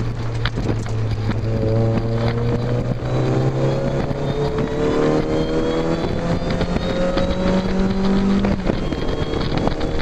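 Mazda MX-5's four-cylinder engine under hard acceleration on track, its note climbing steadily in pitch for several seconds, then dropping abruptly near the end. Wind rushes through the open cockpit throughout.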